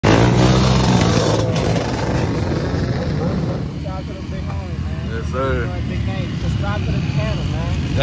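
Engines of a pack of four-wheelers (ATVs) and dirt bikes running together in the first few seconds. A man's voice then talks over steady engine noise that carries on in the background.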